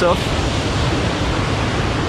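Ocean surf washing onto a beach, a steady even rush of noise.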